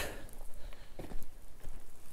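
Footsteps of a person walking across a yard: a few soft, uneven steps.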